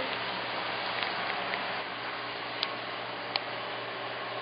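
Steady low hum and hiss of room noise, broken by a few light clicks.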